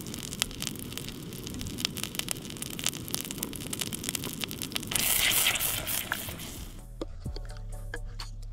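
Fish fillets frying in butter in a small stainless steel pot on a camp stove, a dense sizzle and crackle that swells to a louder hiss around five seconds in and drops away about seven seconds in. Background music plays underneath.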